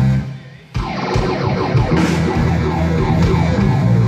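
Live rock band playing with guitars, keytar and drum kit; the band cuts out for about half a second just after the start, then comes straight back in.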